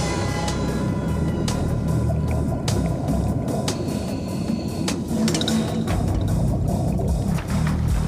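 Film score music over a low, dense rumble, with scattered sharp clicks.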